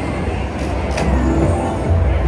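Thunder Drums Mayan Mask slot machine playing its game music and effects over a deep steady rumble, with a sharp crash about a second in, as the machine moves into its free spins.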